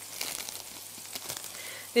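Thin beef burger patties sizzling in a frying pan, a steady hiss with faint crackles, with light crinkling of the plastic wrap on a cheddar slice.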